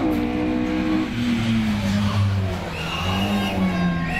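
Classic Porsche race car's engine coming toward the corner, its pitch falling steadily as the car slows off the throttle. A brief high squeal about three seconds in.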